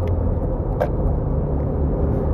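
Steady low rumble of road, tyre and engine noise inside the cabin of a 2001 Audi A4 B6 2.0 petrol driving at highway speed. A single short click a little under a second in.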